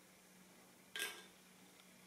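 Near silence, with one brief soft noise about a second in.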